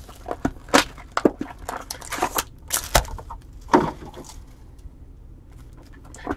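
2020 Bowman Chrome foil trading-card packs crinkling and clicking as a stack of them is pulled from the hobby box and handled: a run of irregular sharp crackles that dies down near the end.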